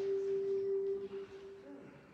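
A single held musical note, a clear pure tone, ending a piece of music: it holds steady, drops about a second in and dies away before the end.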